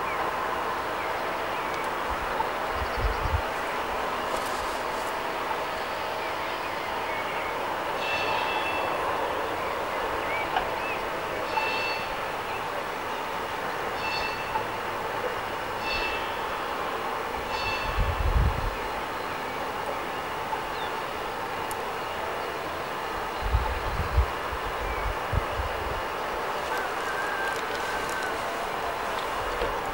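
Class 50 steam locomotive standing and simmering: a steady hiss with a wavering hum, broken by a few low thumps and, midway, several short high chirps.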